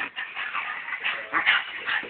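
A dog whimpering, with a few short cries in the second half.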